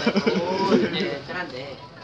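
People talking, one voice quavering rapidly for a moment near the start.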